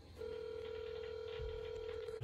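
A steady electronic beep tone, held at one pitch for about two seconds, that starts just after the beginning and cuts off abruptly at the end.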